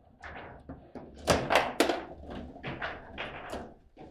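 Table football in play: a quick run of hard knocks and clacks as the ball is struck by the rod-mounted figures and knocks about the table, loudest between about one and two seconds in.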